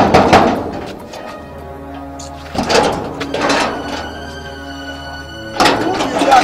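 Loud knocking and banging on a rusty sheet-metal gate, in bursts at the start and again about three seconds in, over steady background music.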